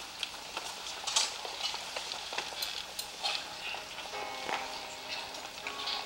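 Scattered clicks, crackles and rustling handling noises, the loudest about a second in, with a few faint sustained instrument notes coming in during the second half.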